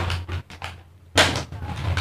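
Plastic snack packets rustling and crinkling as they are handled and set down on a table, with a sharper crackle about a second in.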